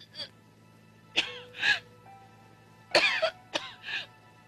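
A woman gagging and retching in about six short bouts, over soft background music.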